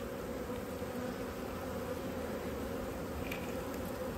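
A honeybee colony buzzing steadily from an open hive, a continuous even hum.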